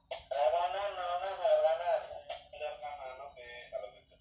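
A man's voice: a long, wavering, drawn-out call of about two seconds, followed by a few shorter phrases.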